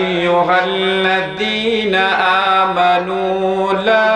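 A man chanting a Quranic verse in melodic recitation style through a microphone, with long held notes that bend and glide in pitch.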